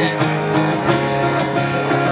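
Acoustic guitar strummed in a steady rhythm, played through a PA with no singing, a strum stroke about every half second over ringing chords.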